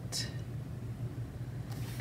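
Quiet room tone: a steady low hum, with a short breathy hiss just after the start and another near the end.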